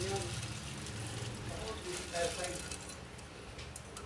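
Hot annatto-infused chicken oil being poured through a wire-mesh strainer into a glass bowl: a liquid pouring and splashing that tapers off toward the end as the stream thins.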